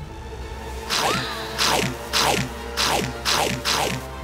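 Cartoon chomping sound effects: something biting into the giant tomatoes, about six crunching bites in a steady rhythm starting about a second in. Quiet background music runs underneath.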